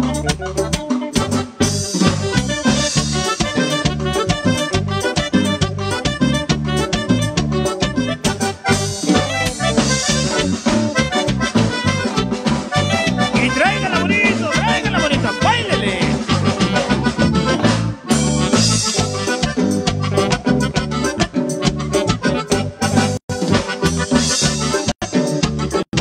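Live band playing an upbeat Latin dance tune on electric bass, drum kit and keyboards, with a steady, driving beat.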